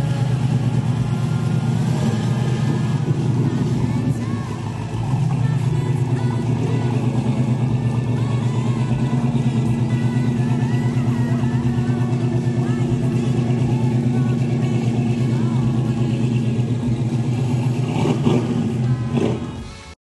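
1968 Dodge Charger's Mopar 440 big-block V8, on Edelbrock EFI, idling steadily and loudly through its exhaust. It eases off briefly about four seconds in, then settles back to the same steady idle.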